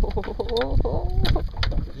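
Excited human voices, laughing and exclaiming in short bursts, with a few sharp knocks about a second in and a steady wind rumble on the microphone.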